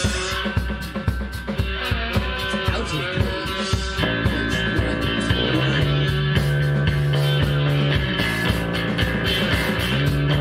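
Live improvised psychedelic rock jam: guitar over drums beating steadily. From about halfway through, a low note is held underneath and the music gets a little fuller and louder.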